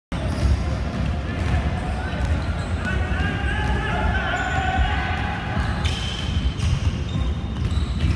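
A basketball bouncing on a hardwood gym floor during a pickup game, with players' voices in the hall.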